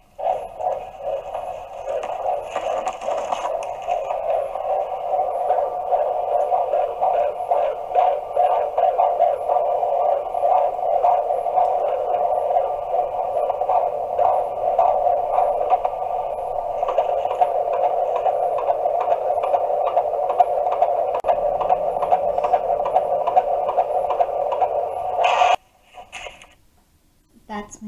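Heartbeat of a 24-week fetus picked up by a prenatal Doppler heart monitor: a fast, steady pulsing whoosh that starts and stops abruptly. It is the heartbeat of a healthy baby.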